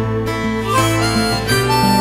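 Folk band instrumental break: a harmonica plays held notes over acoustic guitar and bass.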